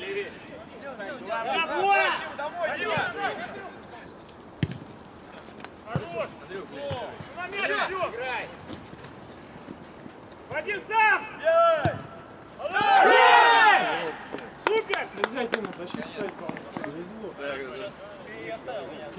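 Footballers' shouts across an open pitch, with several sharp ball kicks. About thirteen seconds in comes the loudest moment, a burst of loud shouting and cheering as a goal goes in.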